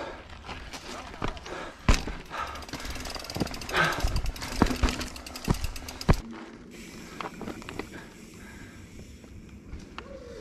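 Mountain bike ridden fast over a rough dirt trail: tyres crunching on dirt, with the bike rattling and sharp knocks from bumps and landings over the first six seconds. Then steadier rolling noise as the trail smooths out.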